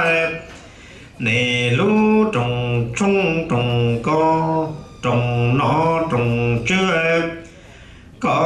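A man chanting a Hmong txiv xaiv funeral song, in long held notes phrase after phrase. The chant breaks off briefly just after the start and again near the end.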